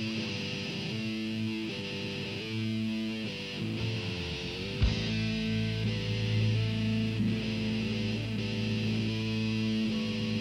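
Live rock band opening a song: electric guitar playing held, shifting notes. A little before halfway there is a single sharp hit, and a heavy low bass part fills in beneath the guitar from then on.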